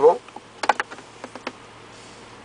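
Several light, sharp plastic clicks and taps spread over about a second and a half as the iPod interface cable's connector is handled and lifted out of a car's center-console storage bin.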